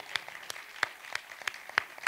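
Theatre audience applauding: a thin round of clapping in which individual claps stand out, several a second at an uneven rhythm.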